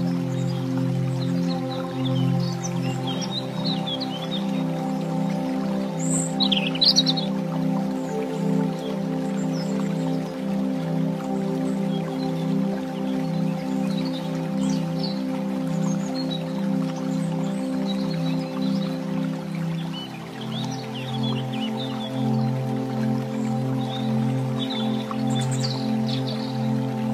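Calm new-age background music: held chords that change about four seconds in and again near twenty seconds, with short bird-like chirps scattered over them.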